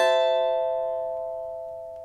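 A steel-strung cavaquinho's A minor sixth (Am6) chord ringing out after a single strum and fading steadily, the high overtones dying away first.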